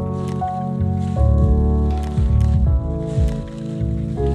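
Lofi hip hop instrumental: sustained chords that change every second or so over a deep bass line and a soft, steady drum beat.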